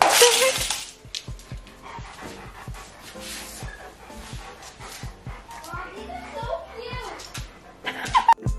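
Background music with a steady beat. At the very start there is a loud clatter as a steel dog bowl is set down on a tile floor, and a dog vocalises briefly later on.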